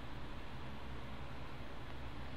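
Steady background hiss with a low hum underneath, with no other sound: the recording's room tone and microphone noise.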